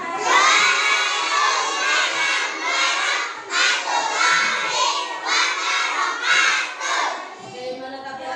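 A class of young children shouting together in high voices, in repeated loud bursts.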